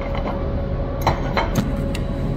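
Steady shop background hum, with a few light metallic clinks and knocks from about halfway through as a welded steel test plate is handled and set down on the bench.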